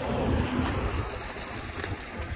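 Wind on the microphone: a steady low rumble, with two faint knocks, about two-thirds of a second in and near the end.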